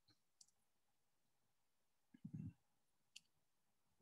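Near silence: room tone, broken by two faint sharp clicks, one near the start and one about three seconds in, and a brief soft low sound about two seconds in.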